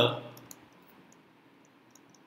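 Faint, sparse clicks and taps of a stylus on a drawing tablet during handwriting, over quiet room hiss. The tail of a spoken word fades out at the start.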